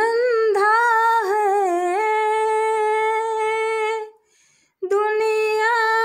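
A woman singing a Hindi devotional bhajan without accompaniment, holding one long note for about four seconds. She breaks off briefly, then starts another long held note.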